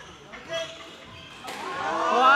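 Quiet hall sound with one soft knock about half a second in, then a voice starting near the end and rising in level.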